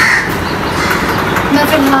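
A crow cawing once, a short hoarse call right at the start, over steady background noise.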